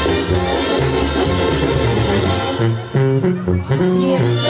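Sinaloan banda brass band playing live over the stage sound system, with tuba bass under trumpets and trombones. The music drops out briefly just before three seconds in, then the horns come back in on held chords.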